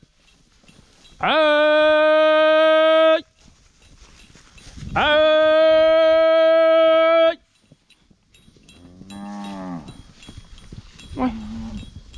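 A herder's long, held calls to drive cattle, twice, each about two seconds on one steady high note, the first swooping up into it. In the last few seconds cattle moo more quietly, two low arching calls.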